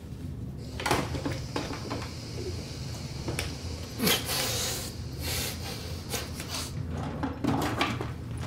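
Several knocks and clatters, like cupboard doors and drawers being opened and shut, spread unevenly, the loudest about four seconds in and followed by a brief hiss.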